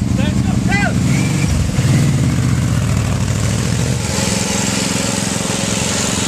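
The engine of a homemade riding lawnmower running steadily, its note shifting about two seconds in and again about four seconds in.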